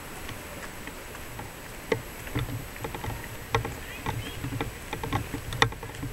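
Irregular knocks and rubbing from the handheld camera being moved and carried, starting about two seconds in, over a faint steady outdoor background.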